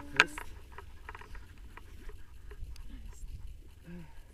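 A single sharp click just after the start, then a low wind rumble on the microphone with faint scattered clicks and rustles of harness and gear being handled.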